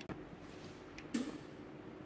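Quiet room tone with a faint click about a second in, followed by a brief soft sound.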